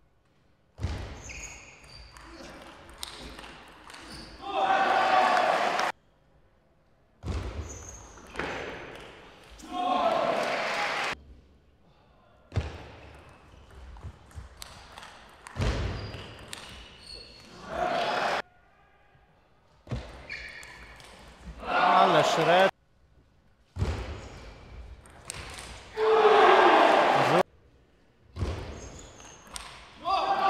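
Table tennis rallies: the ball ticking back and forth off bats and table, each point ending in a loud burst of shouting and cheering. The points are separated by sudden silent gaps.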